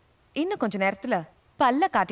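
Crickets chirping in a thin, high, pulsing trill behind a woman's speech.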